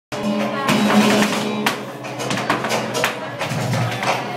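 Live flamenco music with held pitched notes, broken by sharp percussive strikes every half second or so.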